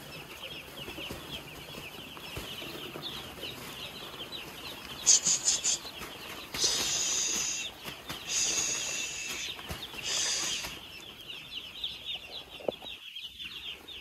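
A large flock of two-day-old broiler chicks peeping continuously, many high, short peeps overlapping into a steady chorus. Between about five and eleven seconds in, four louder, shriller drawn-out stretches stand out above the chorus.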